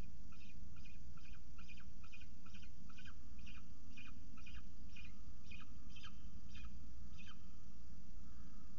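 Peregrine falcon calling a short note over and over, about twice a second, for several seconds before stopping near the end, over a steady low hum.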